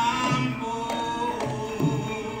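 Live Javanese gamelan music, with a voice holding long, slightly gliding notes over the ensemble and low drum strokes marking the beat.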